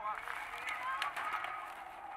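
Faint voice over quiet street background, with a few light clicks, from the played-back soundtrack of a music video's spoken skit.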